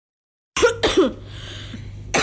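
A person's voice: after a short silence, two quick throaty bursts that fall in pitch, close together, followed by a faint low steady hum.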